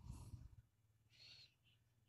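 Near silence, with a few faint brief sounds in the first half-second and a faint high-pitched tone just over a second in.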